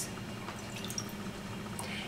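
Faint dripping of lemon juice from a plastic measuring cup into a glass mixing bowl, the last of a just-finished pour.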